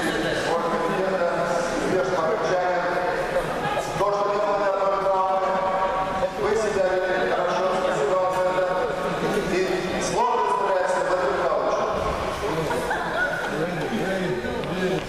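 Men's voices talking indistinctly, with no clear words.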